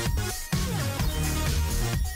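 Electronic dance music with a steady beat and a falling synth glide about half a second in.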